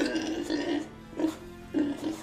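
A pig oinking in about four short grunts over background music, as a cartoon pig's subtitled 'speech'.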